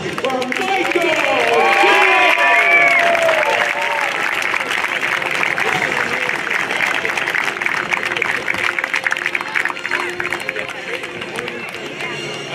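Crowd applauding and cheering, the clapping thinning and fading toward the end, with music playing faintly underneath.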